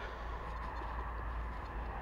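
Quiet, steady outdoor background: a low rumble with a faint hiss and no distinct events.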